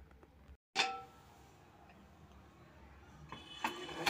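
A single short metallic clink of cookware about a second in, ringing briefly, over low kitchen room tone; faint clattering of utensils near the end.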